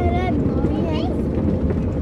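Steady low rumble of a 4x4's engine and drivetrain heard inside the cabin. A child's high voice calls out briefly at the start and again about a second in.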